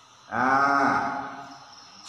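A man's drawn-out hesitation sound, a held "aah", lasting about a second, its pitch sagging slightly before it fades.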